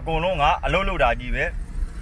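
A man speaking for about a second and a half, then pausing, over the low, steady rumble of a car's interior.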